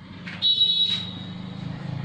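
Whiteboard marker squeaking briefly against the board as a stroke is written: one short high-pitched squeal about half a second in that fades within a second. Under it runs a low steady hum.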